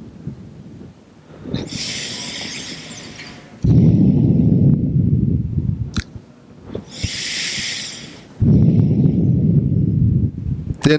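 Two slow, deep breath cycles close to a clip-on microphone: each a hissing breath followed by a louder exhale that blows on the microphone.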